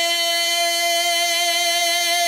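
A man singing a naat into a microphone, holding one long note at a steady pitch without a break.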